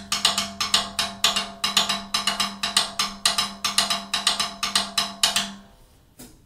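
Drumsticks playing the Afro-Cuban palito rumba pattern on the drum kit: a quick, syncopated run of sharp, woody clicks with a low, steady ring beneath. It stops shortly before the end.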